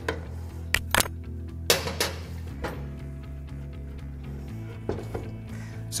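About five sharp metal clinks, scattered through the stretch, as a one-inch combination wrench is worked on the threaded top bushing of a Supralift air cylinder, over background music with a steady low bass.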